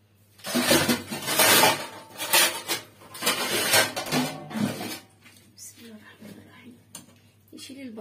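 Kitchenware clattering and scraping in several loud, sudden bursts over the first five seconds, then quieter handling noises.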